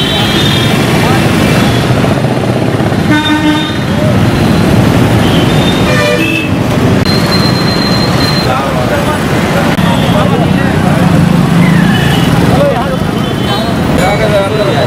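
Busy road traffic with vehicle horns tooting: one short horn blast about three seconds in and another about six seconds in, over a steady din of engines and voices.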